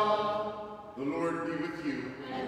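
The last held note of a sung Gospel acclamation fades out within the first half-second. About a second in, a man's voice begins at the ambo, opening the Gospel reading.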